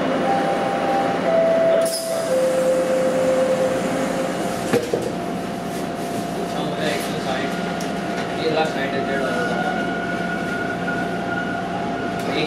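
Bombardier T1 subway car running through the tunnel: a steady rush of wheel and running noise. A tone steps down in pitch over the first few seconds, then holds steady.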